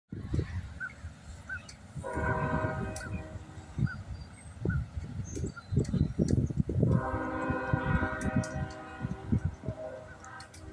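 A train horn sounding two long blasts, the first about two seconds in and the second from about seven seconds in, running on to the end. Wind buffets the microphone throughout.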